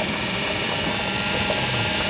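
Steady engine and road noise of a moving vehicle heard from inside its open-sided cabin, an even rush with a faint steady hum.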